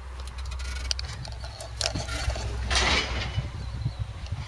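Steady low rumble of heavy scrap-processing machinery running at a distance, with scattered light clicks and a brief rustle about three quarters of the way through.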